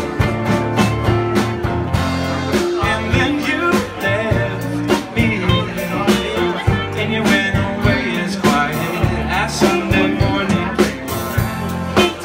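Live band playing a song: strummed acoustic guitar, keyboard, electric guitar and a steady drumbeat, with a man's lead vocal.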